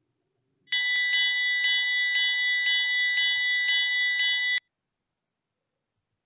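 Countdown timer's time-up alarm sound effect: a bright electronic ringing tone that pulses about twice a second, starting just under a second in and cutting off sharply about four seconds later.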